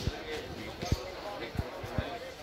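Four dull low thumps in two seconds, the loudest about a second in, over indistinct background voices.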